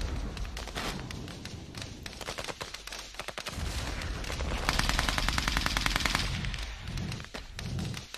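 Battle gunfire: scattered single shots, then a rapid machine-gun burst lasting about a second and a half in the middle.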